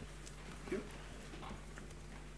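Faint scattered knocks and taps from people moving about the stage, over a steady low electrical hum from the hall's sound system, with one louder knock about three-quarters of a second in.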